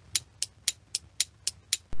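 Clock ticking as an edited-in sound effect: seven short, crisp, evenly spaced ticks, about four a second.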